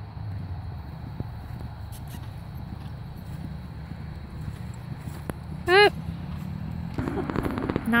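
Horses cantering on a grass arena, their hoofbeats muffled under a steady low rumble. A brief high-pitched voice sounds about three-quarters of the way through.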